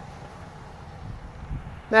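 Quiet outdoor background with a faint low rumble and a soft low bump about one and a half seconds in; a man's voice starts right at the end.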